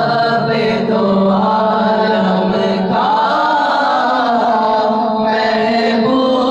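A man singing an Urdu naat (devotional praise poem) into a microphone, with no instruments, in long held notes that glide up and down, over a steady low tone held underneath.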